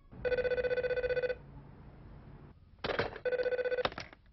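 Telephone ringing with a warbling electronic ring: one ring of about a second, a pause, then a shorter second ring. The second ring is cut off with a click as the handset is picked up.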